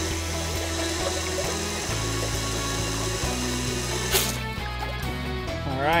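Water pouring steadily from a PEX line into a five-gallon plastic bucket, a flow test that works out to about 10 gallons per minute, heard as an even hiss under background music with a steady bass. A brief sharp noise stands out about four seconds in.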